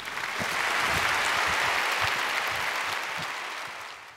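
Audience applause that builds over the first second, holds steady, and fades away near the end.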